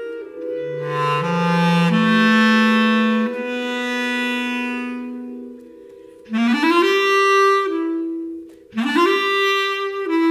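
Bass clarinet playing slow, sustained notes that step upward in pitch over the first few seconds, with a second, higher tone held at the same time. The sound fades twice, about six seconds in and near the end, and each time new phrases start with quick upward slides.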